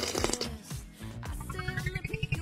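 A sip through a straw, then a cartoon sound effect: a quick run of chiming notes that climbs in pitch over a fast low pulsing, starting about a second and a half in.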